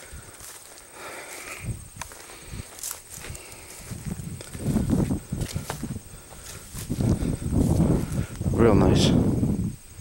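Footsteps and leaves brushing as someone wades through a dense, leafy stand of turnips and other forage plants, getting louder about four seconds in and again for the last few seconds.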